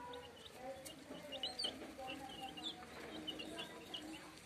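A brood of young chickens peeping: many short, high chirps, several a second, overlapping irregularly.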